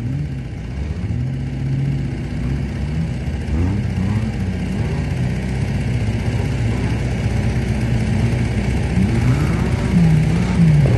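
Off-road 4x4 vehicle's engine revving in repeated surges, its pitch rising and falling again and again, getting a little louder near the end.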